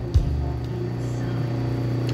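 Lapidary cabbing machine running with a steady low motor hum, the grinding wheels spinning idle, with a single light click shortly after the start.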